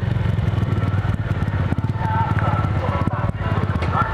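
Motorcycle engine running steadily while riding, heard from a helmet-mounted camera.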